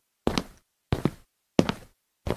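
Footstep sound effects in an animated intro: three evenly spaced thuds, about two-thirds of a second apart.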